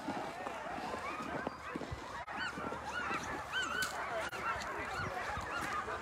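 Many Alaskan husky sled dogs yipping and barking at once, a faint chorus of short high overlapping calls with no pause.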